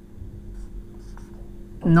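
Felt-tip marker writing on a whiteboard: faint strokes of the tip on the board, over a low steady hum.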